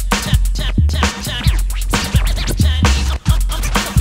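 Hip hop beat with deep bass kicks and drum hits, overlaid with turntable scratching.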